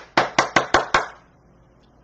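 A quick run of about seven sharp knocks or taps on a hard surface within the first second.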